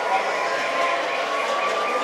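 Busy toy-store ambience: indistinct chatter mixed with electronic toy noise, including a high warbling tone that repeats about five times a second.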